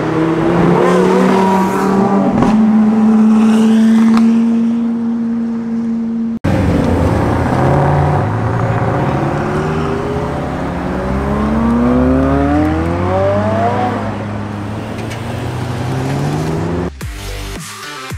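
Supercar engines leaving a car meet. A Lamborghini pulls away, its engine note climbing and then holding at steady revs. After a cut about six seconds in, a McLaren accelerates hard, its revs rising steeply. Electronic music takes over about a second before the end.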